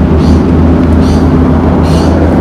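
A loud, steady low rumble of motor-vehicle traffic on the road alongside, with a faint hiss that comes and goes about every 0.8 s.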